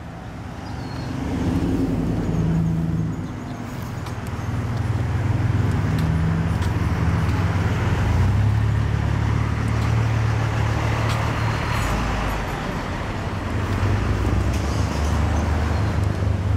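A motor vehicle's engine running close by: a steady low rumble that swells over the first couple of seconds and again a few seconds later, then holds.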